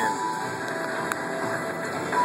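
Electronic slot machine tones, a few steady held notes over a noisy casino background, after the Dragon's Vault machine has triggered its free-games bonus.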